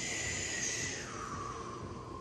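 A woman's long audible exhale, a slow breath out paced to a yoga movement, strongest for about the first second and then trailing off.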